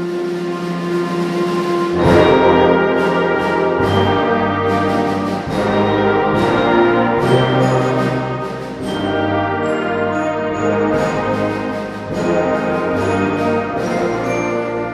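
Concert wind band playing live: a held brass chord, then the full band comes in louder about two seconds in, with repeated percussion strikes over the brass and woodwinds.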